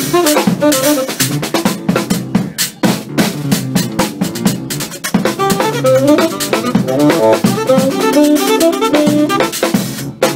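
Live jazz trio: a tenor saxophone plays fast, busy runs over a driving drum kit, with keyboards beneath.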